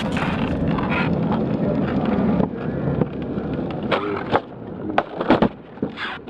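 Skateboard wheels rolling on concrete, a steady rumble for the first couple of seconds that then eases off, followed by several sharp clacks of the board striking the ground in the second half.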